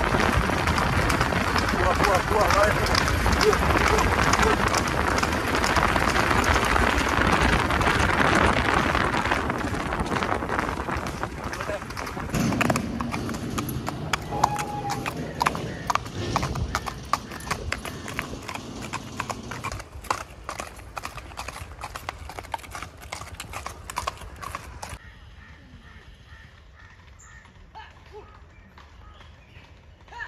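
Horse hooves clip-clopping on a paved road, under a loud rushing noise for the first nine seconds or so. The hoofbeats continue more clearly as the noise fades, then the sound drops suddenly to much quieter, faint hoofbeats about 25 seconds in.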